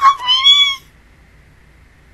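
A short, high-pitched vocal call that rises and then falls in pitch, over within the first second.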